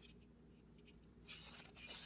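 Quiet room tone, then, from a little past halfway, light rubbing and scraping as a circuit board with an aluminium heat sink is turned over in the hands.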